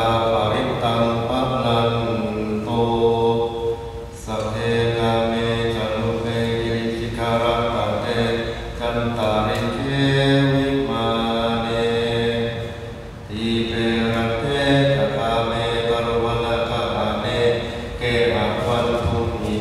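Theravada Buddhist monks chanting Pali together in a low, steady monotone on long held tones. The chant breaks off briefly for breath about four seconds in and again about thirteen seconds in.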